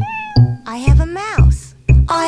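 A cat meowing twice, the second meow rising and falling in pitch, over children's song music with a steady drum beat.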